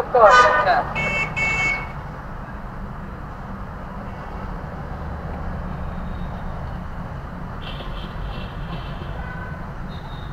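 A loud voice in the first second, then a short high two-note beep lasting under a second. After that there is a steady low outdoor rumble with faint high chirps near the end.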